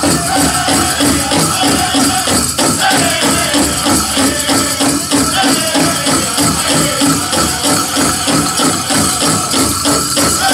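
Powwow drum group singing a men's chicken dance song over a fast, steady drumbeat, with the jingle of dancers' bells over it.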